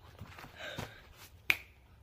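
A single finger snap about one and a half seconds in, sharp and short, after a soft breath.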